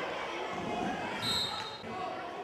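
Live sound of a children's korfball game in an indoor sports hall: young players' voices echo in the hall and a ball bounces on the court. A brief high tone comes a little after one second in.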